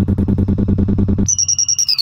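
Live-looped electronic music from a Boss RC-505 loop station, chopped into rapid even pulses by a slicer effect. A low drone cuts out about a second and a quarter in and a high held tone takes over.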